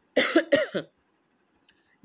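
A man coughing: two quick coughs within the first second.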